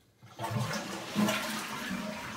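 Toilet flushing: after the lever on the tank is pressed, a rush of water starts suddenly about half a second in and runs on steadily.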